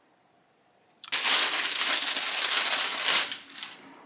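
Crunching of a crispy fried plantain chip being bitten and chewed close to the microphone. The dense, crackly crunching starts suddenly about a second in and lasts about two and a half seconds.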